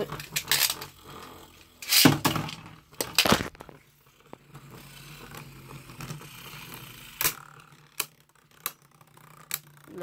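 Handling noise: a string of irregular clicks and knocks, the two loudest about two and three seconds in, from a phone being moved about and set down while it records.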